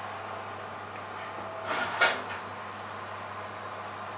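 Oven door being opened: a short rasp, then a sharp clack about two seconds in, over a steady low hum.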